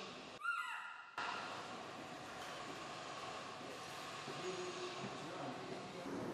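A baby macaque gives one short, high-pitched call that rises and falls, about half a second in; after it there is only steady background noise.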